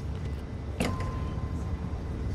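Low, steady rumbling ambience with a sharp click a little under a second in, followed by a short steady beep.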